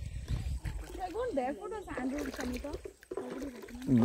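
Quiet, indistinct talking from about a second in to about three seconds, over a low rumble on the microphone.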